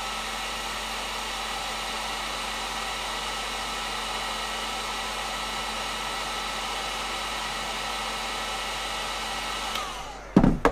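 Electric heat gun blowing steadily with a high fan whine, heating a fishing jig from the top so that the next coat of powder paint will melt onto it. It is switched off shortly before the end, and the whine falls away.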